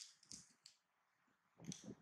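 Faint crunching and rustling of crisp raw cabbage leaves: a few short crackles near the start and a quick cluster near the end.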